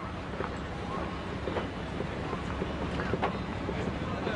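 Steady low rumble of a ferry's engine, with passengers' footsteps on the gangway and faint voices.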